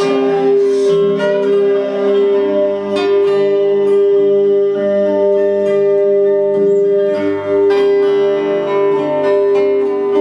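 Acoustic guitar played instrumentally, with no singing: picked notes and chords over a bass line that changes every two to three seconds, and one note held steadily underneath.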